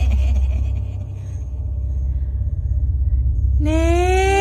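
Deep, steady low rumbling drone of a horror soundscape, with the tail of a laugh fading out at the start. Near the end a long, high, held voice-like note comes in over the drone.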